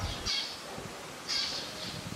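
A bird calling: two short, high-pitched calls about a second apart.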